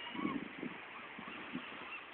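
A few short, faint animal calls over a steady rush of wind and surf.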